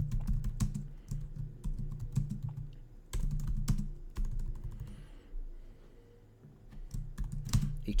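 Typing on a computer keyboard: a run of quick, irregular key clicks, thinning out for a moment in the second half before a few more keystrokes near the end.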